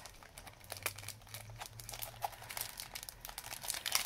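Paper and plastic packaging rustling and crinkling as craft supplies are handled, in short irregular crackles, over a faint low hum.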